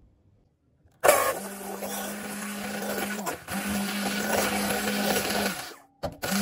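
Electric immersion blender starting about a second in and running steadily as it beats egg and salt in a metal bowl. It drops out briefly once midway, then stops just before the end.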